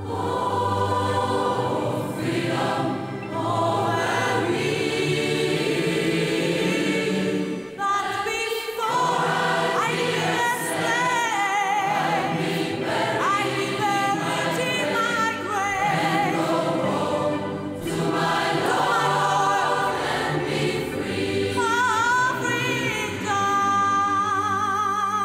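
Choral music: a choir singing, the voices sustained and wavering in vibrato.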